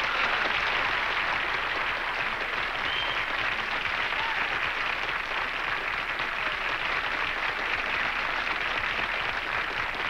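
Studio audience applauding steadily after the number ends.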